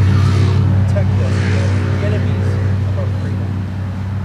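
A motor vehicle engine idling with a steady low hum, under a man's faint speaking voice. A rushing swell about a second and a half in is a car passing.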